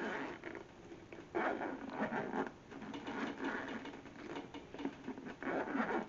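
Scratchy rustling and rattling from hands handling a rubber basketball purse, rubbing at its zipper, gold chain and strap, in a few short spells.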